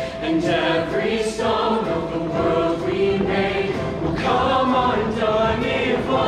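Mixed show choir of men and women singing together in harmony during a staged performance.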